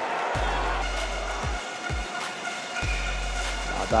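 Music playing over arena crowd noise, with a few low thumps about a second and a half, two seconds and three seconds in.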